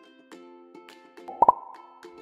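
Short intro jingle of quick pitched notes, with a sharp double pop sound effect about one and a half seconds in.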